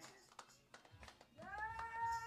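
A lull after the choir's singing, with a few faint clicks, then a single high voice sliding up into a held note for about a second near the end.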